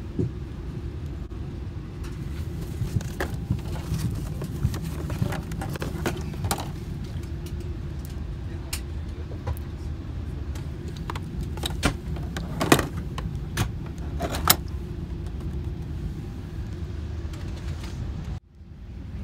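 Steady low hum of a Boeing 747-8 cabin on the ground, overlaid with crinkles, clicks and taps from an amenity kit pouch and a plastic water bottle being handled close by. The sharpest clicks come in the last third.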